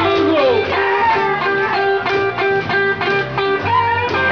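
Live blues band playing an instrumental passage: guitar picking a short repeated note in a steady rhythm over upright bass, with a note sliding down about half a second in.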